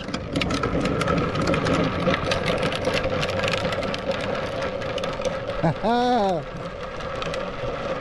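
Hard plastic wheels of a Big Wheel-style trike rolling and rattling on asphalt as it coasts downhill, growing fainter as it moves away. A short voice call about six seconds in.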